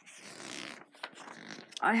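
A page of a Panini Premier League 2021 sticker album being turned by hand: a brief swishing rustle of paper lasting about a second, followed by fainter rustles of the page being handled.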